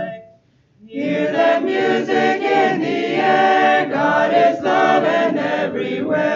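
Mixed choir of men and women singing a cappella in parts. A held chord ends right at the start, and after a breath of under a second the voices come in together again.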